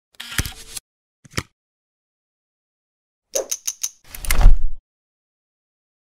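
Edited logo-intro sound effects: a short burst, a single click, a quick run of four sharp strikes, then a louder, deeper hit, each cut off into dead silence.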